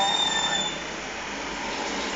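Steady background noise of a running ceiling fan, with a thin high-pitched whine that stops just under a second in.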